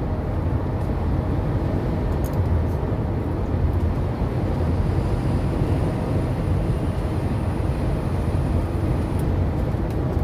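Steady road and engine noise of a car driving at highway speed, heard inside the cabin, with a deep, even rumble.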